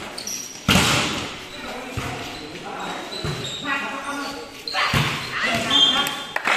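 A volleyball being struck during a rally: a sharp hit about a second in and another near five seconds, on an echoing concrete court. Players and spectators call out in between.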